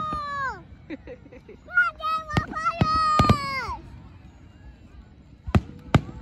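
Aerial fireworks bursting: several sharp bangs, a cluster about two to three seconds in and two more near the end. Over them, a high voice calls out in two long drawn-out 'ooooh's that fall in pitch at the end.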